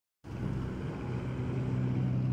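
A vehicle engine idling steadily, a low even hum that starts a moment in.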